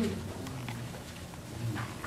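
A pause in a man's amplified preaching: low room tone, with one brief faint voice sound near the end.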